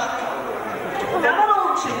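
Speech through a microphone in a large hall, with background chatter.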